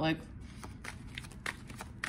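Tarot deck being shuffled by hand: a run of soft, irregular flicks and riffles of the cards, after a single spoken word at the start.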